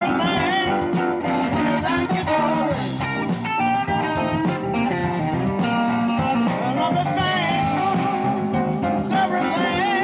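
Live electric band playing a blues-style number: an electric guitar carrying the lead with notes that bend in pitch, over bass guitar, drums and keyboard.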